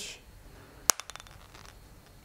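Handling of a rugged tablet case's pen tether: one sharp plastic click about a second in, followed by a quick run of fainter ticks.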